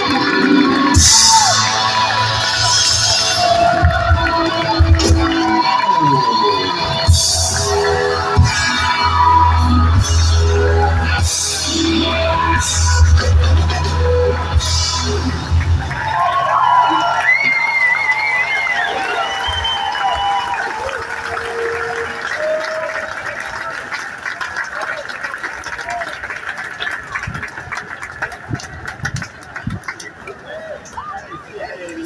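Live band playing through a PA: electric guitar and a strong bass line, which stop about halfway through. Outdoor street and crowd noise with voices follows, growing quieter toward the end.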